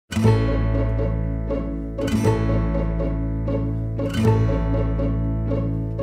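Instrumental background music: repeated sharp, quickly fading notes over a held bass note, with a strong accent about every two seconds.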